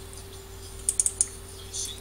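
Three or four quick, sharp clicks about a second in, over a faint steady hum.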